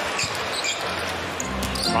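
Arena crowd noise with a basketball being dribbled on the hardwood court. Music with a steady low note comes in about one and a half seconds in.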